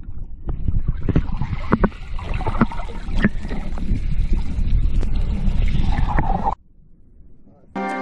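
Water noise picked up by a camera underwater: a steady rushing rumble with scattered clicks and knocks, cutting off suddenly about six and a half seconds in. Music starts just before the end.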